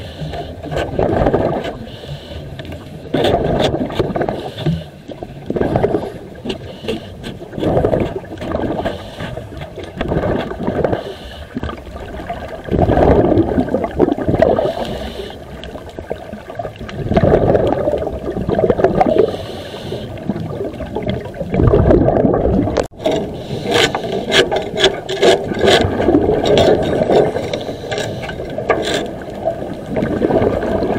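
Underwater scuba breathing: a diver's regulator exhaust releases a bubble burst roughly every four to five seconds. Scattered clicks and scrapes, thickest in the second half, come from barnacles being scraped off a ship's hull.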